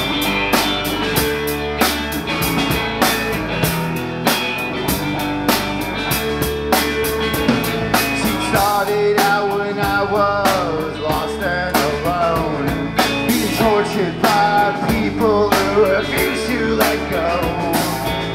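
Live rock band playing an instrumental passage: electric guitars, bass and drum kit in a steady beat. About halfway in, a lead line with bending notes comes in over the rhythm.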